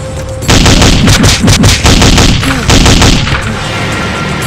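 A burst of automatic rifle fire: rapid shots start about half a second in and run for nearly three seconds before stopping.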